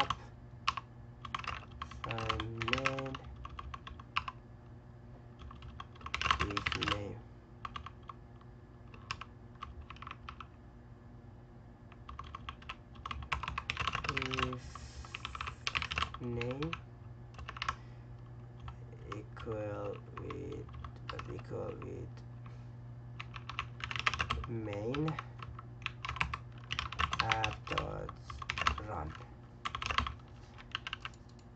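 Typing on a computer keyboard: key clicks in irregular runs and pauses, over a steady low hum.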